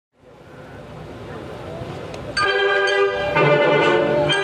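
Faint noise fading in, then about two and a half seconds in a symphony orchestra comes in loudly with a held chord.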